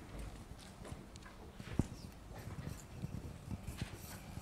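Scattered soft thumps and knocks with one sharper click a little before the middle: a roving hand microphone being carried up through the lecture theatre and handled as it is passed to a questioner.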